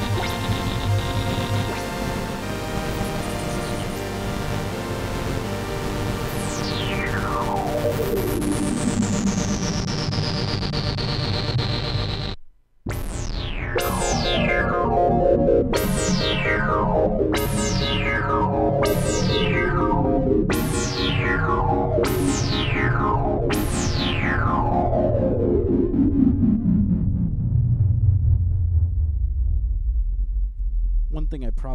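Fender Chroma Polaris synthesizer played without effects: sustained notes with one long bright sweep falling in pitch. After a brief break near the middle comes a string of repeated notes, each with its own falling sweep, about one every second and a half.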